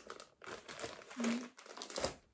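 Thin plastic packaging crinkling and rustling in irregular bursts as a multipack of baby bodysuits is pulled open by hand.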